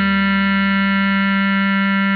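Bass clarinet holding one long, steady note.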